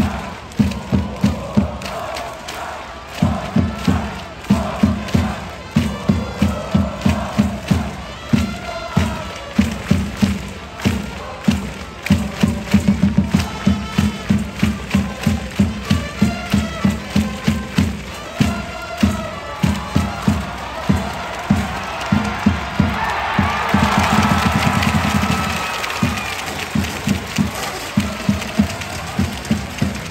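Baseball cheering section chanting in unison over drums beating at about two strokes a second. About three-quarters of the way through, the drumming turns into a continuous roll and the crowd noise swells, then the steady beat resumes.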